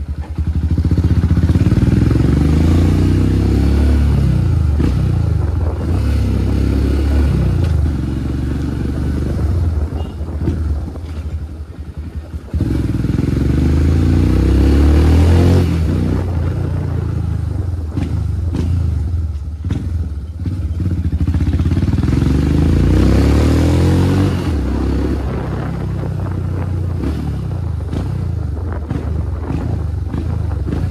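Motorcycle engine running under way, its revs repeatedly rising and falling as it speeds up and eases off. About ten seconds in it drops away briefly, then picks up hard again.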